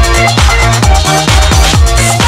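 Electronic club dance music from a late-1990s trance DJ mix: a steady kick drum on every beat, a little over two a second, under sustained synth chords.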